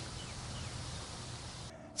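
Faint, steady background hiss with a faint short chirp about half a second in; no hoof impacts are heard.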